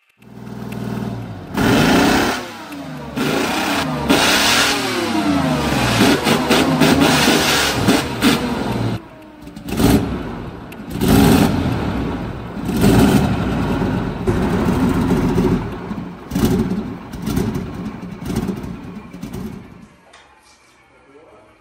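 Large diesel engine on a test stand starting and revving, its pitch rising and falling for several seconds. After a break about ten seconds in it is running on, its speed swelling up and down.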